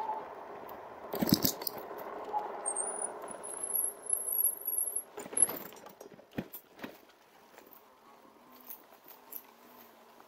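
A 2019 RadMini Step Thru electric bike rattling and clunking over a bump and rough ground, with a sharp knock about a second in, a thin high squeal for a couple of seconds, and a few more clicks before it rolls on more quietly.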